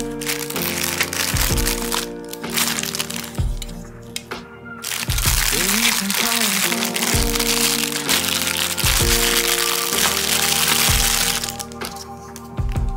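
Background song with singing, over the crinkling and crackling of plastic packaging as plastic cookie cutters are handled. The crinkling is thickest from about five seconds in until just before the end.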